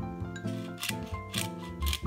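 Handheld pepper grinder being twisted over a pot, giving short gritty grinding bursts about twice a second, starting about a second in. Light plucked background music plays throughout.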